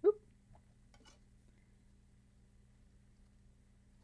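Two faint clicks from the drive mechanism of a Bose three-disc CD changer as it is handled, over a low steady hum; otherwise near quiet.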